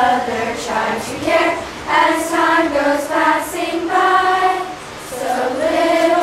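A group of girls singing together as a choir, with several long held notes and a short break between phrases about five seconds in.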